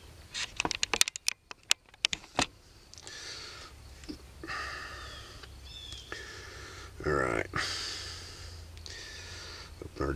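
A quick run of sharp clicks in the first two seconds or so as a flintlock musket's lock and its knapped stone flint are handled, then quieter fumbling with a short vocal murmur about seven seconds in.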